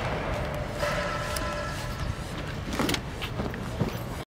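Outdoor ambience with a steady low rumble and a brief whining tone about a second in.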